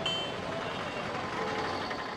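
Steady outdoor street ambience at a busy night market: a continuous wash of traffic and crowd noise with a few faint held tones, no single event standing out.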